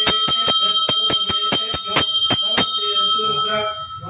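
A temple bell rung rapidly during a puja, about five strikes a second over a steady ring. The strikes stop a little before three seconds in and the ring dies away, with a man chanting Sanskrit mantras.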